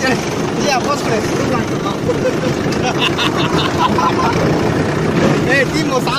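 Farm tractor engine running steadily as it drives over rough ground, with a dense rumbling noise and snatches of men's voices over it.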